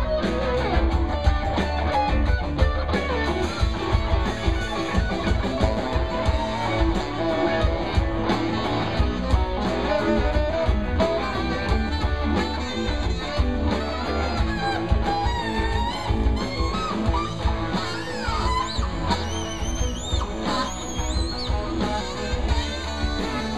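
Live rock band playing an instrumental passage: electric guitar lead over bass and drums with a steady beat, the lead bending notes in the second half.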